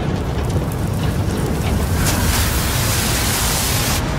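Icy wind blowing snow, with a heavy low rumble underneath. The hiss of the wind grows louder and brighter about two seconds in.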